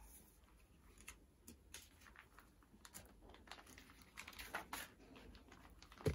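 Faint rustling and crinkling of a clear plastic cover and notebook paper as pages are slid inside it: scattered light ticks, a little louder past the middle.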